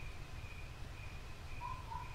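Faint background during a pause in speech: a low steady hum under a thin, high, evenly pulsing chirp, with a brief lower whistle-like tone near the end.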